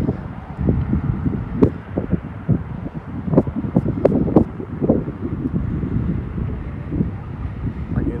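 Wind buffeting a phone microphone, a gusty low rumble with a few short sharp knocks in the middle.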